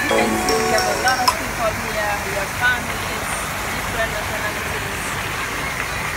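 Steady rushing splash of a garden water feature pouring into a pond. Indistinct background voices and music are heard in about the first second.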